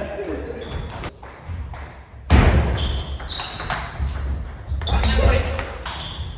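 Table tennis rally: the celluloid-type hardball ticking off bats and table, with heavy footfalls on the wooden floor and short high squeaks of shoes.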